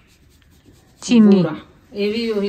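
Quiet room tone with faint light scratching, then one short loud spoken word about a second in.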